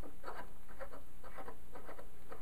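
A trap slip nut being turned by gloved hands onto a threaded pipe nipple: a run of faint, irregular scratchy rubbing strokes over a steady low hum.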